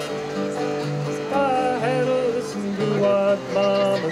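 Acoustic guitar and banjo played together live, with a man's voice singing over them from about a second in.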